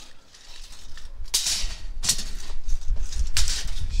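Rattling and scraping of a steel tape measure being drawn out along ribbed concrete slabs, in several short bursts, over a low rumble from the microphone being carried.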